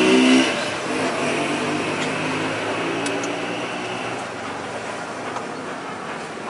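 A motor vehicle's engine hum passing close by and fading away in the first second or so, leaving steady street traffic noise. A couple of faint light clicks come through.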